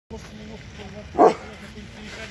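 A dog barks once, sharply, about a second in, over faint background voices.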